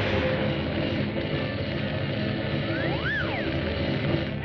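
Cartoon soundtrack: music with a dense, rumbling rush of sound effects that starts suddenly at the outset, and a whistle that slides up and back down about three seconds in.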